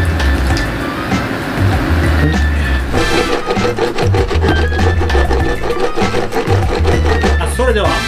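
Background music with a steady beat, over a wooden spatula stirring and scraping through mapo tofu in a frying pan as the sauce thickens with potato-starch slurry.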